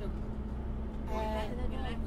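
Steady low drone of a car on the move, heard from inside the cabin, with a voice starting about a second in.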